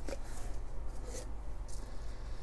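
Faint handling noise of a clear plastic cigar tube being turned in the hands, over a low steady hum.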